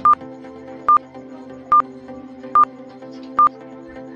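Quiz countdown timer beeping: five short, high, identical beeps a little under a second apart, over soft background music.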